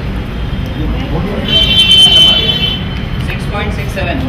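A vehicle horn sounds once for about a second, a high buzzy tone, over a steady rumble of road traffic.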